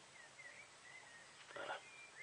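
Faint series of short, high chirps, like a small bird's, with a brief rustle about one and a half seconds in.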